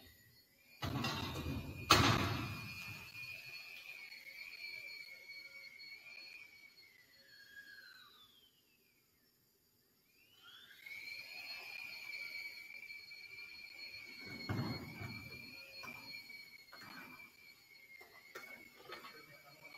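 A heavy gym door bangs shut about two seconds in and rings through the large hall. A second, softer thud comes near the end. A steady high whine hangs underneath, fading out briefly in the middle.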